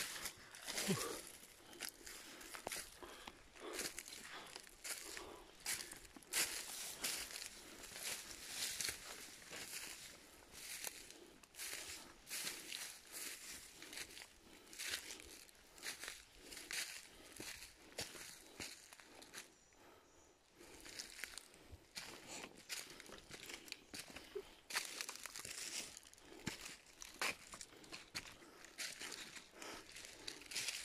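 Footsteps crunching through dry leaf litter and twigs, with grass and bamboo stems brushing past, in an uneven walking rhythm. It eases off briefly about two-thirds of the way through.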